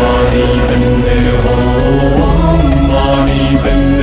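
Music of a chanted Buddhist mantra: a steady, sustained melodic chant with a continuous instrumental backing.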